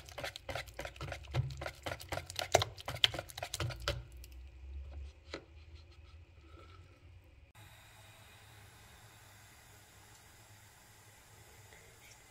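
A wire whisk beating a thin, runny batter in a plastic bowl: quick clicking, sloshing strokes for about four seconds. The strokes then grow fainter and stop at about seven seconds, leaving faint steady room noise.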